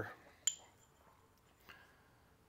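Two threaded metal tubes clinking together once about half a second in, with a short high ring, then a faint second tap.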